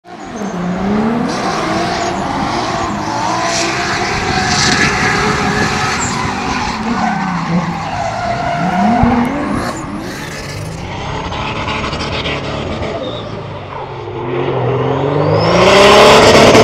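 Drift car's engine revving up and down as it slides sideways, with its tyres squealing and skidding. The engine note rises and falls repeatedly and gets louder near the end.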